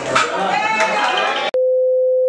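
People's voices for about a second and a half, then an abrupt cut to a loud, steady single-pitched test-pattern beep, the sine tone that goes with a TV test card.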